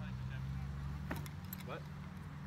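Steady low engine hum, with a couple of sharp clicks about a second in.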